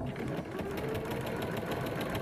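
Domestic sewing machine stitching a seam at a steady speed: a fast, even run of stitches that starts abruptly and holds one pace.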